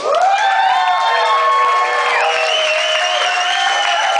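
Audience cheering and whooping, with some applause, as a live rock band's song ends; several long, wavering shouts overlap.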